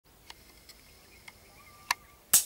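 Birds calling in a few short, sharp chirps, faint at first, the last and loudest just before the end.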